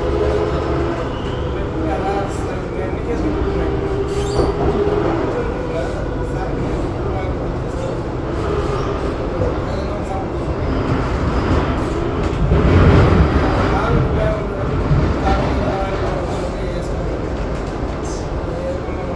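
Cabin running noise of an SMRT C751B metro train pulling out of a station into the tunnel: a steady rumble of wheels on rail and traction equipment, swelling louder for a moment about 13 seconds in.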